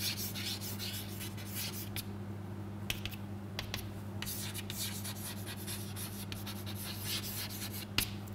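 Chalk scratching on a chalkboard as words are handwritten, in many short, uneven strokes, over a steady low electrical hum.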